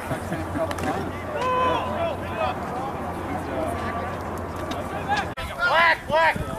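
Indistinct voices of lacrosse players and onlookers calling and chatting, with a louder shout near the end.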